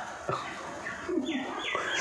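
Birds calling in the background: two short, high chirps about a second and a half in, each dropping in pitch, over softer low calls.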